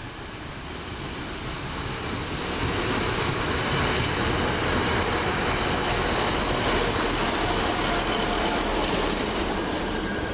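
Class 155 diesel multiple unit arriving into the platform: the rumble of its diesel engines and the wheels on the rails grows louder over the first few seconds as it draws near, then holds steady as the carriages pass close by.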